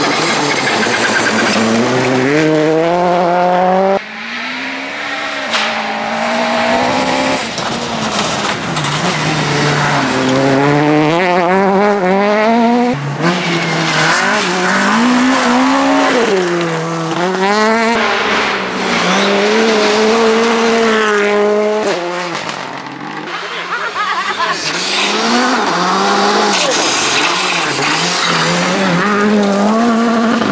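Rally car engines under hard acceleration on gravel, a run of short passes. Each engine's pitch climbs and then drops sharply at each gear change, with gravel and tyre noise over it.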